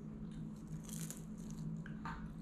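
A child biting into and chewing a deep-fried, batter-crusted zucchini flower: faint crisp crunching, with a brief sharper crackle about a second in, over a low steady hum.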